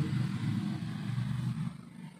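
A low, rough rumble that fades away near the end.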